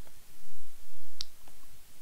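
A couple of faint, sharp clicks over quiet room tone, the clearest a little after a second in.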